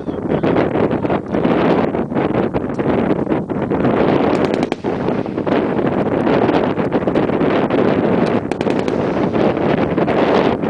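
Wind buffeting the microphone, a loud, steady, flickering rumble, with a few faint brief clicks about halfway through and near the end.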